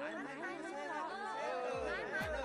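Several people's voices talking over one another. A bass drum beat of music starts near the end, about two beats a second.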